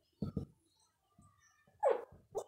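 A dog: two short barks about a quarter of a second in, then a whine that falls in pitch near the end.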